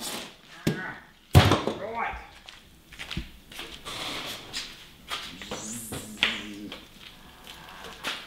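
Sharp knocks and clatter from handling and wheeling an aluminium hive lifter, the loudest knock about a second and a half in, with smaller knocks before and after. Low muttering voice in between.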